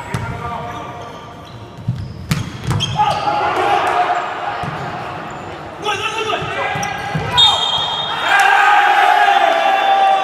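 Volleyball rally in a sports hall: a few sharp hits of the ball among shouting voices, with the shouting loudest near the end as a point is won.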